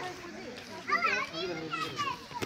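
High-pitched children's voices talking and calling out, loudest about a second in.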